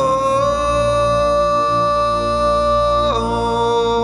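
Slow worship music: a voice slides up into a long held note over soft accompaniment, then steps down to a lower note about three seconds in.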